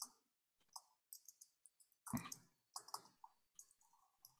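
Computer keyboard typing: a run of faint, irregular key clicks, with one heavier key thump about two seconds in.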